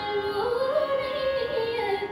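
A girl's solo voice singing a Carnatic kriti in raga Bilahari, the pitch gliding and shaking in ornamented gamakas, over a steady drone from an electronic shruti box.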